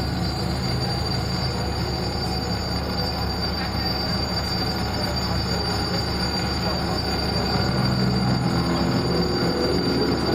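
Dark electronic drone soundtrack of a facade projection show, played over loudspeakers: a dense rumbling noise with steady low tones and a constant high whine.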